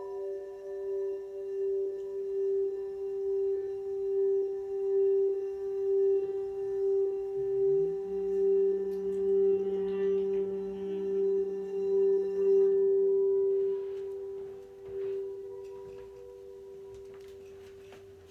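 A frosted quartz crystal singing bowl played steadily around its rim, giving one sustained ringing tone that swells and pulses a little more than once a second. Partway through, a lower tone slides up and holds for several seconds. Then the rim playing stops and the ring slowly fades away.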